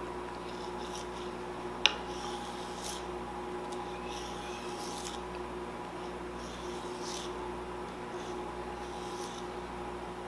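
Kitchen knife slicing through a bundle of ramp leaves on a plastic cutting board: soft scraping cuts roughly once a second, with one sharp click about two seconds in. A steady faint hum runs underneath.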